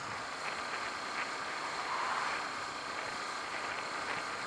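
Steady rush of wind and engine noise from a Honda CBF125 motorcycle being ridden along a road.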